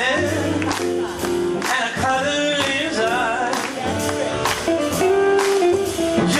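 Live small jazz band with sung vocals: a singer's melody over hollow-body electric guitar, double bass and drums.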